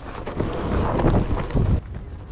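Loud wind noise buffeting a camera microphone mounted low on an electric one-wheel board as it rides up a steep dirt hill, mixed with the rumble of the ride.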